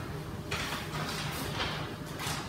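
Soft rustling of paper sheets being handled, a few faint brushing strokes, over a low steady room hum.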